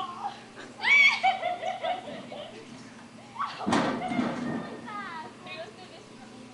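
Children's voices calling out and chattering, without clear words, with a loud high call about a second in and a short noisy burst a little past the middle.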